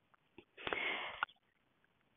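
A person's quiet, short sniff-like breath in through the nose, lasting about half a second.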